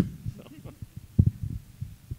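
Irregular low thumps and rumble from a handheld microphone being handled as it is lowered, the strongest about a second in, after a short laugh at the start.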